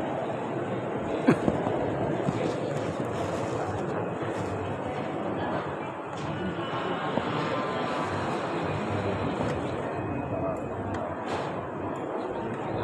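Indistinct murmur of men's voices, steady throughout, with one sharp click a little over a second in.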